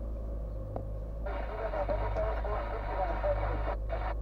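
Steady low rumble of a car's engine and cabin at slow speed, with a thin, muffled voice from a radio starting about a second in and cutting off sharply near the end.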